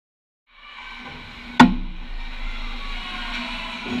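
Silence, then ice hockey rink sound fades in about half a second in, with faint music under it. About a second and a half in comes a single sharp crack, the loudest sound, typical of a stick or puck striking on the ice.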